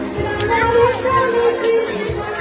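A song with a steady drum beat, mixed with the voices of a crowd and children.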